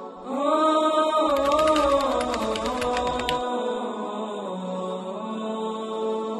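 Closing theme music: a chanting voice enters just after the start and holds long, wavering notes over a steady drone. A fast run of percussion hits sounds from about a second in for about two seconds.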